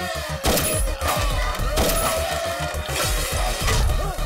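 Action-film fight score with a fast driving beat, overlaid with a few sharp hit sound effects of blows landing, about half a second, two seconds and three seconds in.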